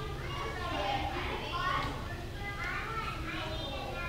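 A young child's voice babbling and calling out faintly in a few short bursts, over a steady low hum.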